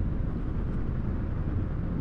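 Honda ADV150 scooter cruising at a steady speed of about 35: a continuous low rumble of wind, engine and road noise, with no change in pitch or level.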